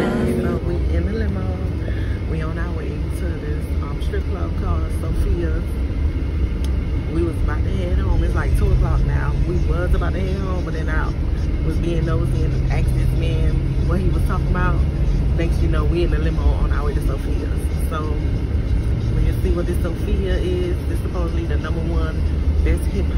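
Steady low rumble of a car's road and engine noise heard from inside the cabin as it drives, under a woman's talking.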